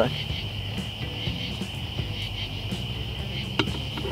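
Crickets chirping steadily. A single sharp click about three and a half seconds in as a metal spoon knocks against the cast-iron Dutch oven.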